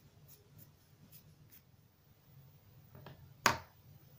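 Faint rubbing and a few soft clicks as fingers work at a small lacquered plywood figure, then a single sharp tap about three and a half seconds in as the figure is set down on a wooden desk.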